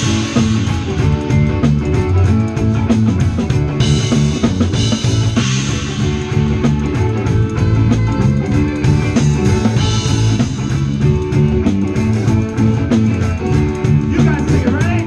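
Live rock band playing an instrumental passage on electric guitars and drum kit, with repeated cymbal crashes.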